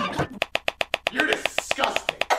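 A short voice clip stuttered by editing: one brief syllable repeated rapidly, about ten times a second.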